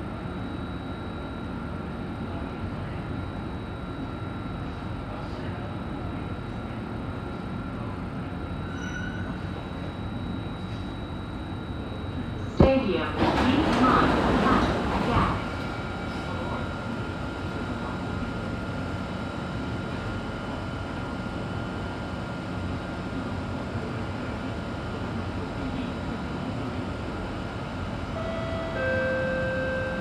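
Inside an Alstom Metropolis metro car: a steady low rumble and hum as the train comes into the station, then a sharp clunk a little under halfway through as the doors open, followed by a few seconds of louder sound and a steady hum while it stands at the platform.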